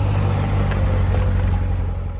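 Supercharged 6.2-litre LT4 V8 of a 2016 Corvette Z06 running at low speed as the car rolls slowly by, a steady low exhaust note.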